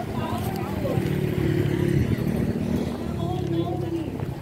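A motor vehicle engine running steadily close by, with people's voices in the background.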